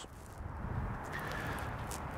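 Steady low background noise, a hiss with some low rumble, with a faint thin steady tone coming in about halfway through.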